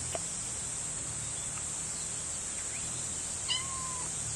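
A kitten gives one short, high meow about three and a half seconds in, its pitch sliding slightly down. Steady high-pitched insect buzzing runs underneath.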